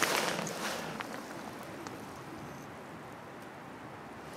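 Rustling handling noise and light wind, louder in the first second, then settling to a low steady hiss with a few faint clicks.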